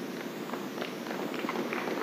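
A pause in a speech: steady hiss of room noise in a hall, with a few faint taps.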